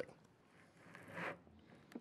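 Faint rubbing and scraping of a plastic cooler sliding into a snug box lined with cured spray foam, swelling and fading about a second in, with a short click near the end.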